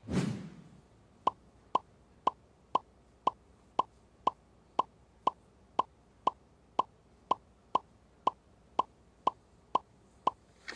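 Game-show sound effect: a brief swish, then a short tonal blip about twice a second, one for each letter struck off the alphabet strip as the hidden answers fill in letter by letter.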